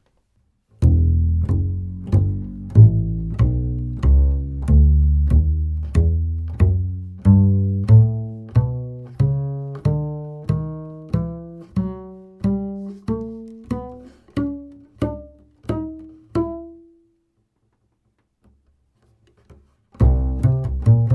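Double bass played pizzicato: a walking bass line at about two plucked notes a second, climbing steadily in pitch to a last note that is left to ring and dies away a few seconds before the end. The bass is strung with Gut-a-Like SwingKing synthetic gut-substitute strings, flat-wound on the A and E.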